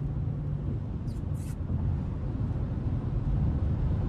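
Cabin noise inside a Chrysler 300 driving on a wet road: a steady low rumble of engine and tyres. A low hum stops under a second in, and two short hisses come about a second in.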